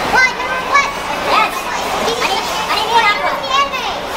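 A group of people calling out and shouting over one another in excited, high-pitched voices, with no single voice standing out.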